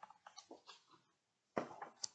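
Pages of a picture book being turned by hand: a few faint paper ticks, then a brief rustle of paper about one and a half seconds in.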